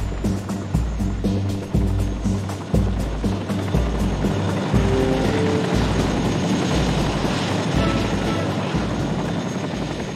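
Background music with a pulsing bass beat, mixed with the rotor and engine noise of a low-flying Chinook tandem-rotor helicopter, which grows stronger from about halfway in.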